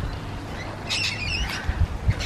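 A bird gives a brief squawking call about a second in, a quick cluster of high, sliding notes, over a low, uneven background rumble.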